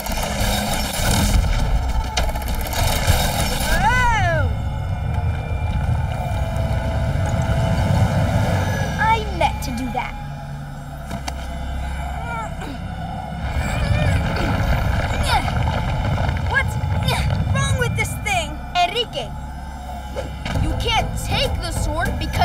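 Cartoon soundtrack: background music and sound effects under a boy's wordless voice, straining and grunting as he pulls a magic sword free.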